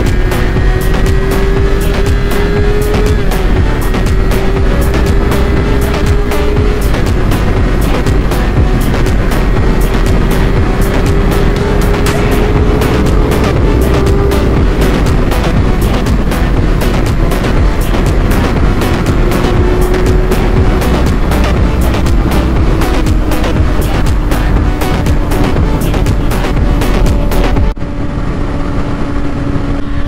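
Electronic music with a fast, steady beat laid over a 2022 Kawasaki ZX-6R's 636 cc inline-four engine running at steady cruising revs, with wind noise at speed. The music cuts off shortly before the end, leaving the engine and wind.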